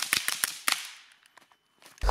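Rapid shots from an AR-15-style rifle fitted with a suppressor, fading out within about the first second.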